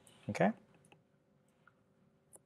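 A few faint, sparse clicks of a stylus tapping on a tablet's glass screen during handwriting.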